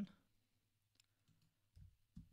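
Near silence with a few faint clicks, about a second in, from computer input while text is edited on screen, and a soft low thump near the end.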